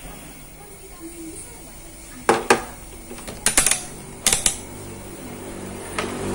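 Hands handling a plastic charger adapter and its cable on a wooden workbench: sharp clicks and light knocks in three short clusters, about two, three and a half, and four and a half seconds in.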